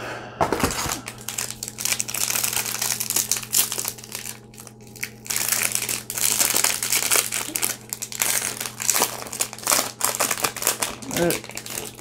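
A plastic trading-card pack wrapper, from a Panini Complete basketball pack, being torn open and crinkled by hand: a dense, irregular crackling with short pauses.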